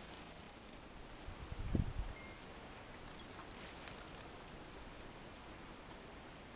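Faint steady outdoor background hiss, broken by a brief low rumble a little over a second in, the kind made by wind or handling on a camera's built-in microphone.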